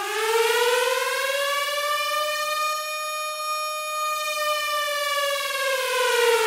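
An air-raid siren sound effect: one long wail that climbs in pitch over the first second, holds high, and sinks slowly again toward the end.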